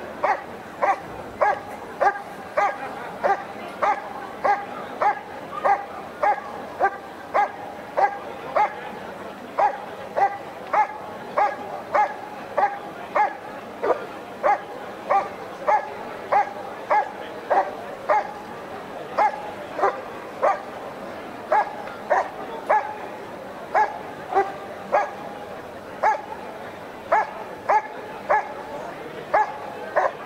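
German Shepherd Dog barking steadily at a helper hidden in the blind, about two barks a second: the hold-and-bark of IPO protection work.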